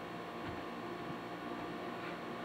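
Steady low hiss and hum of a quiet film scene, heard through a television speaker in a room.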